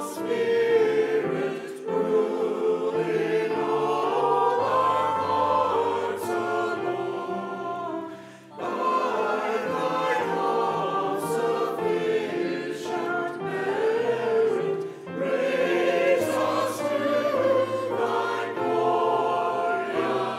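Mixed-voice church choir singing a hymn or anthem in held, sustained phrases, with short breaks between phrases about eight and fifteen seconds in.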